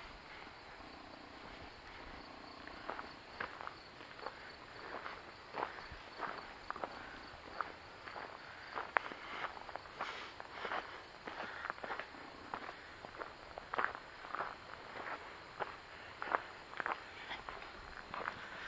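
Footsteps on a gravel road, a steady walking rhythm of about two steps a second that starts a few seconds in.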